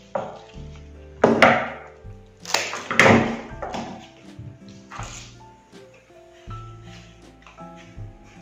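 Background music with a few short knocks and rustles, the loudest about two and a half to three seconds in, as flower and pine stems are handled and pushed into a small plastic pot.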